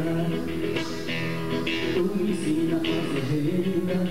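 A man singing a Brazilian folk song live, accompanying himself on an acoustic guitar.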